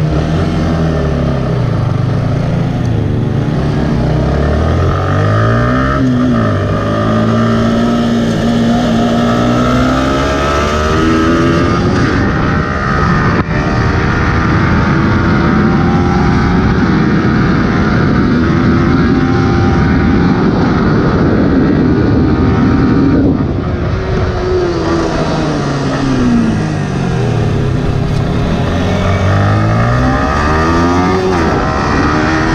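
Yamaha R15 V3's 155 cc single-cylinder engine heard onboard, pulling away and accelerating through the gears, the pitch climbing and dropping at each shift. In the middle it holds high revs under heavy wind noise on the microphone. Later the revs fall as the bike slows, then climb again near the end.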